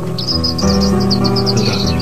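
A small songbird in a cage chirping in a quick run of short, high notes, over background music.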